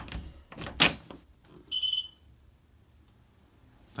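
Interior door being worked by its knob: a few clicks of the knob and latch, with a sharp thunk of the door against its frame a little under a second in. A brief high tone follows about two seconds in.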